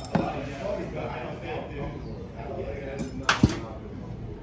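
Sharp knocks of thrown objects hitting a target in a backyard throwing game: one just after the start and a louder quick pair about three seconds in, with people talking.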